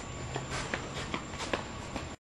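Soft, irregular footsteps and shuffling of a person walking off across an indoor floor, about five light steps.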